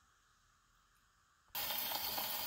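Near silence, then about one and a half seconds in a steady surface hiss starts abruptly: the needle of an acoustic phonograph's reproducer has been set down on a spinning shellac 78 rpm record and is running in the lead-in groove before the music.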